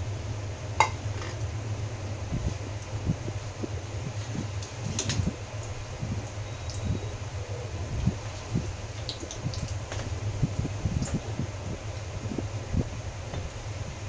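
Koftas frying gently in oil in a metal wok on a low flame: light irregular crackling of the oil, with a few sharp clicks and scrapes of a perforated metal spatula against the wok, the sharpest about a second in, over a steady low hum.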